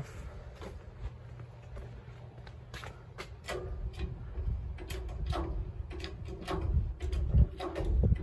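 Wooden caster cart rolling over asphalt: a steady low rumble with scattered clicks and knocks, and a louder bump near the end.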